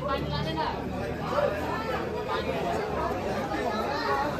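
Chatter of a crowd: several people talking at once, overlapping voices with no one voice clear.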